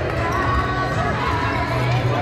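A basketball dribbled on a hardwood gym floor, over the murmur of voices from the crowd in the hall.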